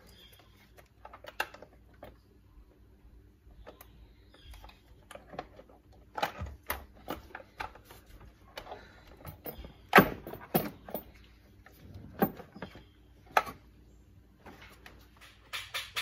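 Irregular clicks and knocks of parts and hand tools being handled in a diesel truck's engine bay, with a cluster about six to seven seconds in and the loudest knock about ten seconds in.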